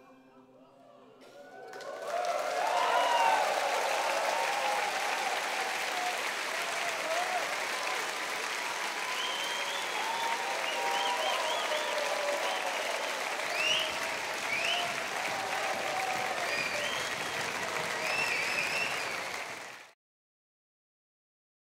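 Concert audience applauding at the end of a piano performance, breaking out about two seconds in after a short hush, with shouts and whistles through it, and cut off at the very end.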